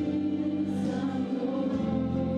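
Group of young women singing together in harmony into microphones, holding long notes; the chord changes near the end.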